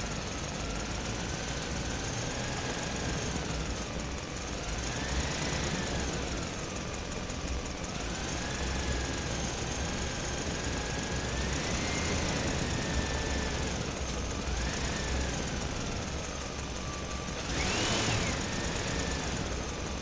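Small electric motor and gearing of a miniature toy vehicle running steadily, its whine rising and falling in pitch as the speed changes, climbing highest a couple of seconds before the end.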